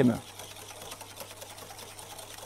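Wire balloon whisk beating eggs and sugar in a glass bowl in quick, even strokes, the wires ticking against the glass: the mixture is being whisked until pale for a fruit-purée crème anglaise.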